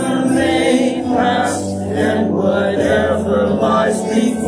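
Church congregation singing a contemporary worship song together, voices carried on sustained melodic lines.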